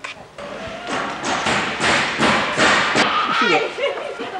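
A quick run of thumps and knocks, with voices raised over them in the second half.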